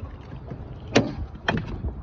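A catfish swung aboard on the line hits the fiberglass boat two times, about half a second apart: sharp thumps as it lands on the deck.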